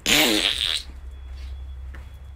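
A man makes one short, loud, breathy vocal noise with a pitch that bends, lasting under a second, in the manner of a blown raspberry.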